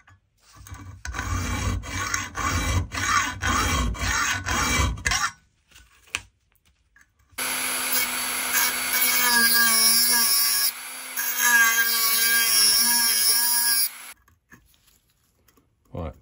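A small hand saw blade rasping back and forth across a seized steel stud, about two strokes a second for some five seconds, cutting a screwdriver slot in it. Then a rotary multi-tool with a cut-off disc runs with a steady whine for about six seconds, dipping briefly midway, grinding the slot deeper.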